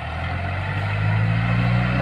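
Compact farm tractor engine running steadily under load while pulling a bed-forming implement through soil, a low even hum that grows gradually louder as the tractor approaches.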